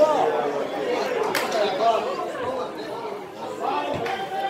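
Several people's voices talking and calling out over one another, with a single sharp knock about a second and a half in.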